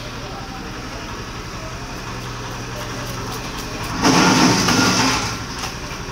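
A knife scraping scales off a large carp: one loud scratchy rasp, about four seconds in, lasting just over a second, over a steady low hum and market din.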